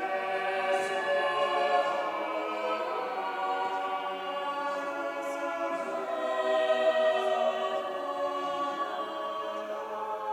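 Church choir singing slow, sustained chords in several parts in a large, reverberant cathedral.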